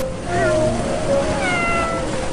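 A cat meowing twice: a short falling meow, then a longer, drawn-out meow that slides down in pitch.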